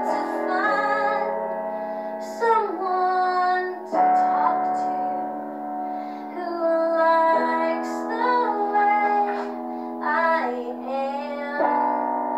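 Woman singing a musical theatre song over a rehearsal backing track of piano, with some long held notes.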